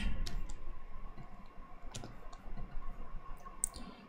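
Computer keyboard keys clicking irregularly as code is typed, a few scattered keystrokes.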